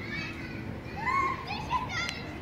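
Children's voices in the background of a playground: short high-pitched calls about a second in and again near the end.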